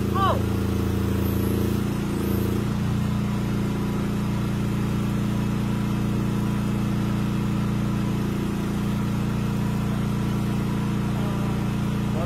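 Engine of a truck-mounted boom lift running steadily while its bucket is raised, its note shifting and settling about two and a half seconds in. A few words of speech at the very start.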